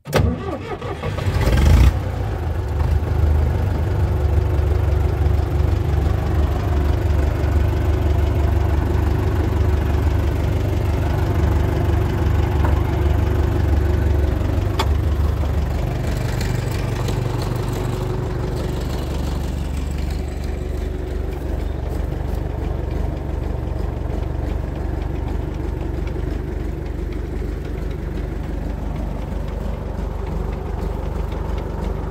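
Tractor engine cranked by the starter and catching after about two seconds, then running steadily at idle.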